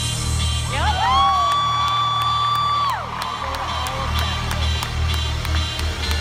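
Electronic dance music with a steady bass beat played over a large hall's sound system, while audience members whoop and cheer: a long held whoop starts about a second in and falls away after about two seconds, with crowd cheering after it.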